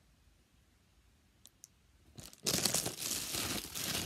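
Quiet room with two faint clicks, then, about halfway through, loud crinkling and rustling of plastic packaging being handled.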